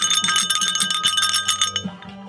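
Old metal crotal (sleigh) bell shaken by hand, its loose pellet rattling inside so it jingles rapidly with a steady high ring, stopping just before the end.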